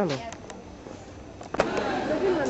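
A brief voice falling in pitch at the start, then low background noise with a few faint clicks. A sharp knock comes about one and a half seconds in, followed by the beginnings of more voices.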